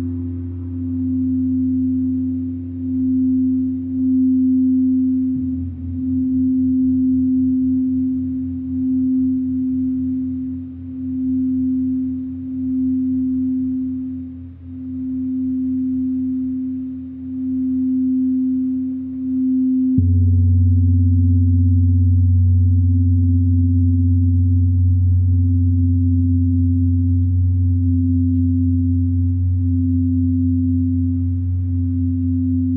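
Crystal singing bowls played by rubbing a mallet around the rim, holding a steady sustained tone that swells and fades in a slow pulse over a deep underlying hum. About two-thirds of the way through, the sound changes suddenly to a fuller, louder hum with a second, higher tone added.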